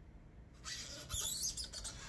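Watercolour brush bristles stroking across paper: a dry, scratchy rustle of quick strokes starting about half a second in.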